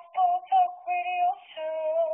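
A high female singing voice sings a few short notes, then a long held note with vibrato near the end.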